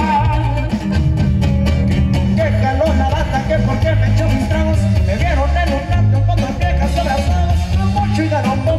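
Live norteño band playing loudly: accordion, guitar, electric bass and drum kit, with a steady bass line under the melody.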